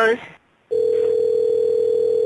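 Telephone tone on a call line: one steady beep about two seconds long, starting a little under a second in and cutting off sharply.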